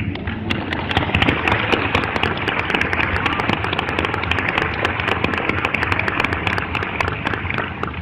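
Audience applauding: a dense mass of overlapping hand claps that starts suddenly and thins out near the end.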